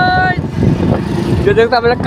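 Voices talking in the first half-second and again near the end, over a steady low rumble of wind and engine noise from a motorcycle being ridden.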